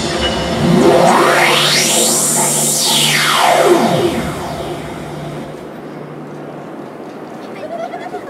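Electronic music on the stage sound system: a synthesizer sweep rises steeply in pitch over about a second and then falls back again, over a held low drone. The music dies away about four seconds in, leaving a quieter tail.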